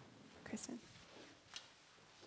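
Quiet room tone with a few faint, distant words murmured about half a second in, and a single faint click about one and a half seconds in.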